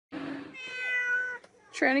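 A domestic cat giving one long, drawn-out meow, held steady for over a second.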